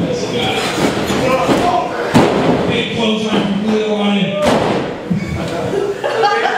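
Two heavy slams of a wrestler's body hitting the wrestling ring mat, about two seconds in and again about two seconds later, over people's voices in a large echoing room.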